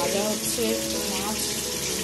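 Tap water running steadily over red amaranth leaves in a steel colander as they are washed and turned by hand.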